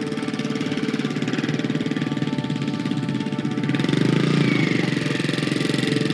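Motorcycle engine running with a fast, even putter that grows louder past the middle, under soft background music.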